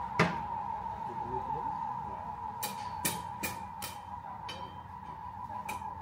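Irregular hammer knocks on a building site: one loud strike just after the start, then a quicker run of four about 0.4 s apart, and a few more near the end. A steady high-pitched whine runs underneath.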